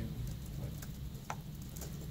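Room tone of a press room: a steady low hum with a few faint, scattered clicks.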